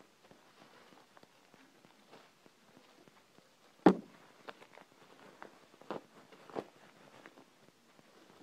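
Bubble wrap being handled and pulled off a long object, with faint crinkling and scattered crackles. One sharp click about halfway through is the loudest sound, and two smaller ones come a couple of seconds later.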